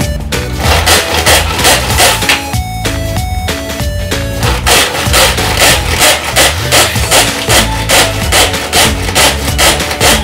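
Background music with a steady beat, over the whirring of a pull-cord manual food chopper as its cord is pulled again and again.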